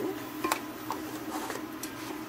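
Wooden spoon stirring a mince-and-onion mixture in a pot, with a few light knocks and scrapes of the spoon against the pot, over a steady low hum.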